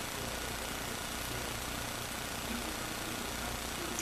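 Steady hiss and low hum of room tone, even throughout, with no distinct sounds.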